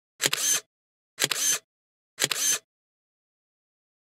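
SLR camera shutter firing three times, about a second apart, each a sharp double click with a short tail.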